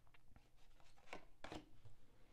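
Faint handling of a tarot deck: a card drawn off the deck and laid on the tabletop, heard as a few soft swishes and taps, two of them a little past halfway through.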